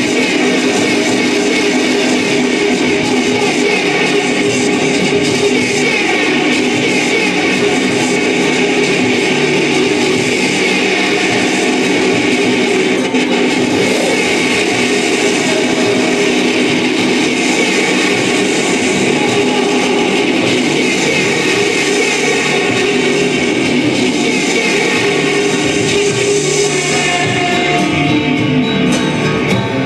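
Loud, dense live electronic music from a keyboard and electronics rig, a continuous wall of sound with many sliding tones running through it.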